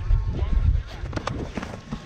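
Wind rumbling on a body-worn action camera's microphone as the wearer runs on grass, with faint shouts from players. The rumble drops away about a second in, leaving a few light thuds of footfalls.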